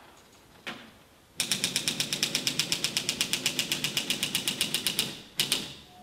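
Typewriter keys struck in a fast, even run of about ten keystrokes a second, after a single click. The run ends with two louder strikes.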